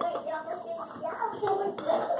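Hands clapping and slapping against each other and the body in quick signing strokes, giving short sharp knocks, over a wordless voice that rises and falls.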